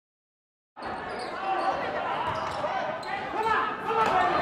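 Silence, then about three-quarters of a second in, the sound of a basketball game in a gym cuts in: a ball being dribbled on the hardwood floor over the voices of the crowd, with a hall echo.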